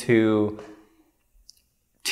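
A man's voice drawing out a single word, then a pause of near quiet broken by one faint, short click about one and a half seconds in.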